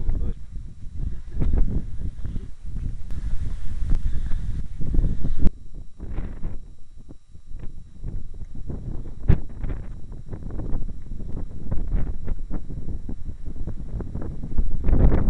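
Irregular footsteps knocking on the steel walkway of a riveted iron bridge, over a heavy low rumble of wind and handling on the microphone.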